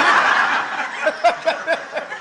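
Listeners laughing at a joke: a loud wash of mixed laughter, then a run of quick, rhythmic 'ha-ha' laughs about a second in.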